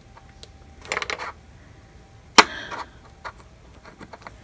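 Small handling sounds of a paintbrush being dipped and knocked in a plastic bottle cap: a brief rustle about a second in, then one sharp click about two and a half seconds in, the loudest sound, followed by a few faint ticks.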